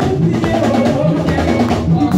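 Live gospel praise band playing: a drum kit beat over sustained bass notes, with women singing into microphones.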